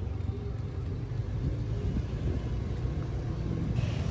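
Steady low rumble of slow, congested city street traffic, cars and motorbikes.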